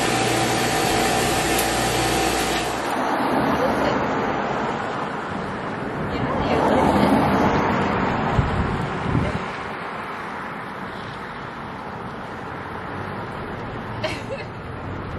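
A steady motor hum, cut off abruptly about three seconds in, gives way to street traffic noise, with a vehicle passing and growing loudest around the middle.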